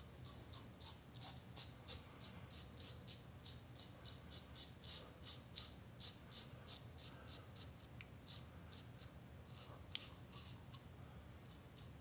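Parker 64S double-edge safety razor with a Personna Prep blade shaving two-day stubble from the upper lip. It makes faint, crisp scrapes in short quick strokes, about three a second, which thin out over the last few seconds.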